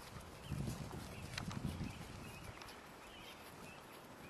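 Hoofbeats of a horse and a pony galloping on grass turf: dull, muffled thuds in two bunches within the first two seconds, then softer.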